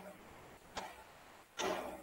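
A few short computer clicks: one at the start, a sharp one just under a second in, and a louder, slightly longer one near the end.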